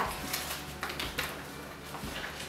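Faint handling sounds of a paper photo card and its frame: a few soft rustles and light taps.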